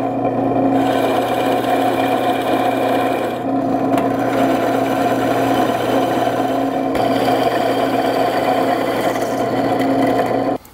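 Drill press running with a 1-1/8-inch Forstner bit boring into a thick wooden post: a steady motor hum under the noise of the bit cutting, removing the waste for a large through mortise.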